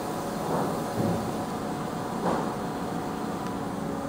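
Steady mechanical hum of machine-shop room noise, with a few faint steady tones running through it and a couple of soft bumps about half a second and two seconds in.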